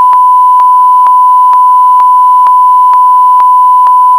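Censor bleep: a single loud, steady pure-tone beep held unbroken for several seconds, masking a word, with faint regular clicks about twice a second.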